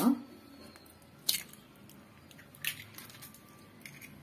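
A hen's egg being cracked open over a bowl of raw chicken pieces: two short, sharp cracks of the shell, about a second and a half apart.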